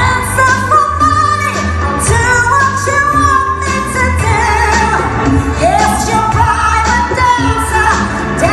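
A woman singing a pop song live into a microphone, holding long gliding notes over an instrumental backing with bass and a steady drum beat.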